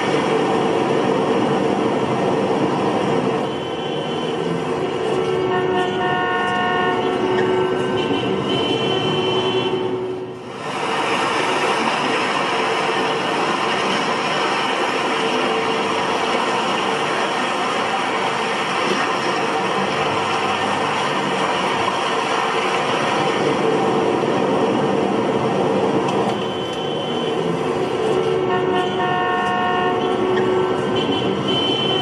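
Loud recorded traffic sound effect played over the stage sound system: a steady rumble of vehicle noise with several held horn toots, dropping away briefly about ten seconds in.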